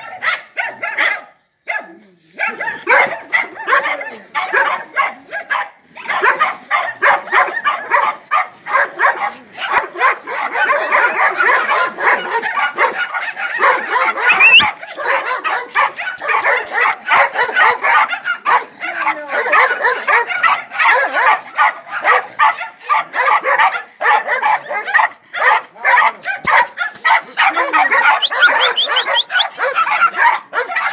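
Several dogs barking rapidly and almost without pause, several barks a second, with a short break about two seconds in.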